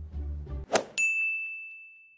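Background music stops, a brief whoosh follows, then a single bright ding that rings on and slowly fades: an editing sound effect marking the cut to a title card.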